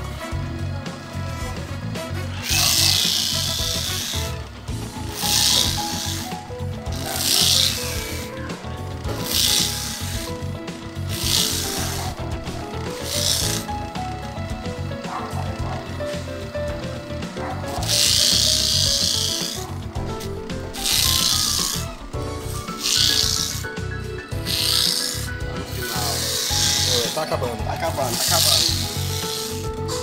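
Electric corn grater grating fresh corn kernels off the cob: repeated short scraping bursts every one to two seconds as cobs are pushed against the spinning grater, with a pause midway, over the steady hum of its motor.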